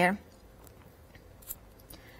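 Faint handling sounds of a clear stamp on a round acrylic block being pressed onto a sheet of vellum and lifted off: a few soft ticks and one small click about one and a half seconds in.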